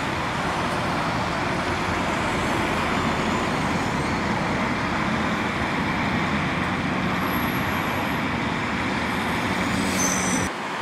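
Lännen 8600C backhoe loader's diesel engine running steadily under load while the backhoe arm digs soil.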